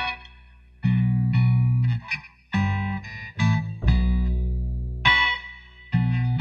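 Guitar playing a slow blues fill between sung lines: notes and chords are picked one after another, each left to ring and fade, over low bass notes.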